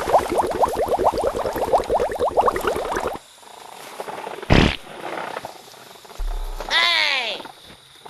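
Edited-in comedy sound effects. A fast croaking rattle of about ten pulses a second runs for about three seconds and cuts off suddenly. A short burst of noise comes about a second later, and near the end there is a quick falling whistle-like swoop.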